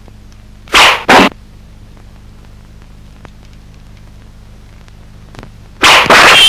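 Two short, sharp hissing bursts of film sound effect about a third of a second apart, a second in, with another starting just before the end. Under them runs the steady low hum of an old film soundtrack.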